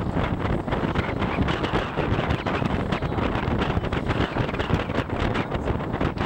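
Wind buffeting the microphone over choppy sea water: a steady, rumbling rush with frequent crackles.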